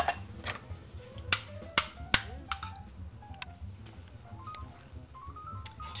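A metal spoon chopping up canned jellied cranberry sauce in a stainless steel saucepan, clinking sharply against the pan about eight times at uneven intervals, with quiet background music.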